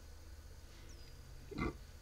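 Quiet room tone with low hum, broken about one and a half seconds in by one short breath-like mouth or nose sound from the man.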